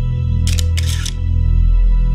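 Slow, sad background music with sustained low tones; about half a second in, a camera shutter clicks twice in quick succession over it.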